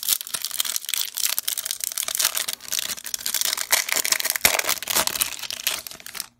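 A 2020 Bowman Chrome trading-card pack wrapper being torn open by hand and crinkled, a dense run of crackling and rustling with sharp clicks.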